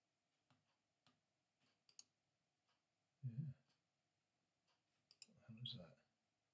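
Computer mouse clicks in quiet room tone: a quick double click about two seconds in and another about five seconds in. A short low murmur of voice comes about three seconds in and again just before the end.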